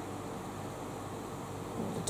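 Steady low hiss with a faint hum: room tone, with no distinct sound standing out.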